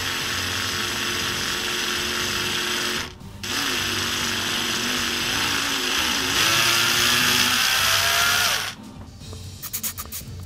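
Cordless drill with a 2 mm bit running as it bores small holes into a diorama base. It runs for about three seconds, stops briefly, then runs again for about five seconds, its whine wavering and then going higher and louder before it stops about a second before the end.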